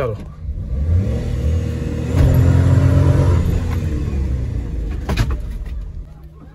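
Maruti Suzuki Wagon R engine heard from inside the cabin, revving up hard as the car launches from a standstill. It is loudest about two to three seconds in, then the revs fall away as it eases off, with a sharp click shortly before the end.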